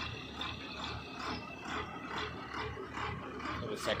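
Borewell drilling rig and its air compressor running, a steady engine drone with a pulsing beat about twice a second.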